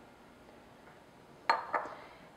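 A small glass prep bowl clinks once against glass or the granite counter about one and a half seconds in, ringing briefly, followed by a couple of lighter taps.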